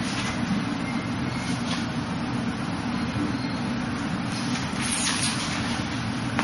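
Steady background rumble with hiss, unchanging, from room noise such as a running fan. A few faint short swishes stand out about two seconds in and again near the end.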